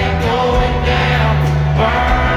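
Live country band music played through an arena PA, with a male lead singer holding long sung notes over the band.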